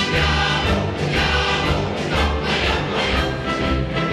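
Fanfare band of brass and percussion playing with a choir singing over it, carried by a steady beat from the drums and a repeating bass line.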